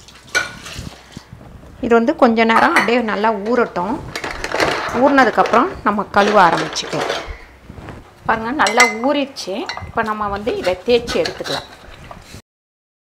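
Metal stove burner grates and burner plates clinking and grinding against each other as they are stirred and handled by hand in a plastic basin of soapy water. Two long stretches of wavering squeals from metal rubbing on metal make up the loudest part.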